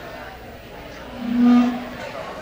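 Murmur of a club room between songs, with a single steady tone that swells and fades for just under a second about halfway through.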